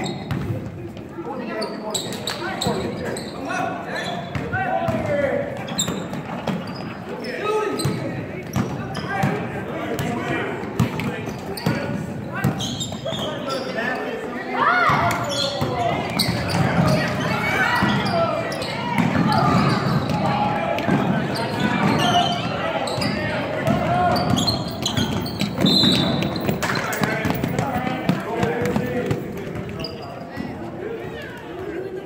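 A basketball bouncing and being dribbled on a hardwood gym floor, with many short sharp bounces. Voices of players, coaches and spectators call and talk throughout, echoing in the large gymnasium.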